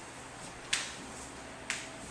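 Two sharp clicks of shoe heels striking a hardwood floor, about a second apart, as a couple takes tango walking steps.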